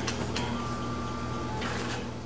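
A short mechanical whirr with a faint steady whine, lasting a little over a second, over a low background hum.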